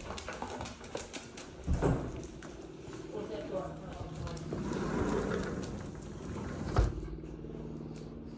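Dogs and a person moving from a tile floor outside: claws clicking and footsteps, with handling noise and a sharp knock about two-thirds of the way through.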